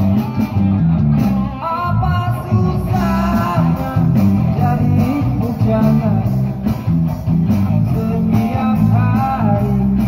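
Live band music played through a small amplified PA: a man singing in phrases over electric guitar, a heavy bass line and drums keeping a steady beat.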